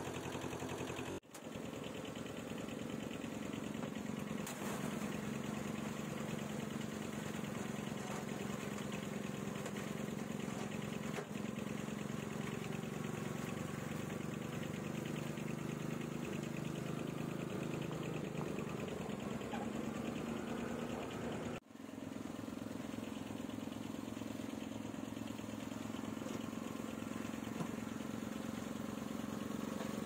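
An engine idling steadily, with two brief dropouts about a second in and about 22 seconds in.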